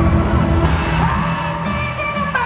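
Live pop concert music over an arena sound system, with a heavy bass beat and sustained pitched lines, heard from among the audience with the crowd cheering underneath.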